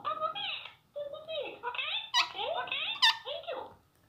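Indian ringneck parakeet chattering in quick, high, squeaky talk-like babble, with two sharp shrill squawks about two and three seconds in.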